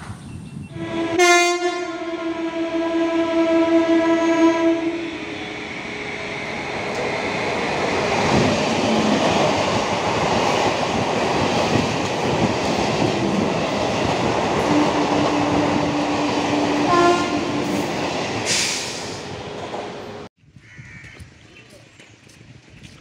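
Indian Railways EMU commuter train sounding its horn for about three and a half seconds, then passing at full speed with a long rush of wheel and track noise. A short second horn blast comes near the end, and the sound cuts off suddenly about two seconds before the end.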